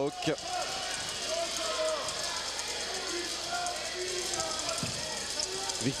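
Basketball arena crowd: a steady murmur with scattered voices and calls from the stands.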